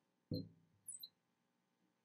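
Faint, brief high squeaks of a marker writing on a glass lightboard, with a short soft low sound just before them.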